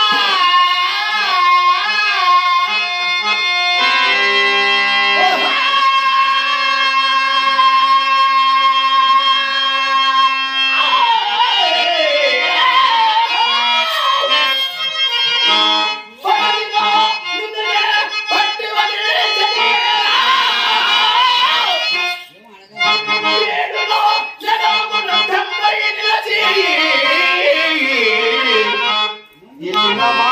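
Harmonium accompanying a singer's wavering, ornamented verse. From about four to eleven seconds in the harmonium plays alone on steady held notes, then the voice returns over it, with short breaks near the middle and the end.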